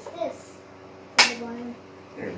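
Hard plastic parts of a 3D-printed toy blaster snapping together once as they are pressed into a friction fit, a single sharp click about a second in.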